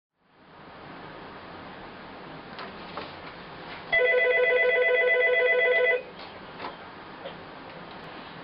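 Desk telephone ringing once: a fluttering electronic ring about two seconds long that starts about four seconds in, over faint room tone with a few light clicks.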